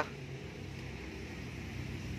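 Faint, steady low hum with light hiss, a constant background noise with no distinct event.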